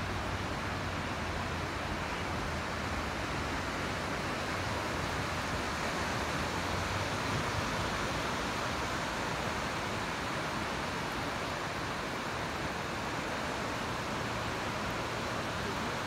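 Steady wash of ocean surf breaking on a sandy beach, an even roar with no separate events.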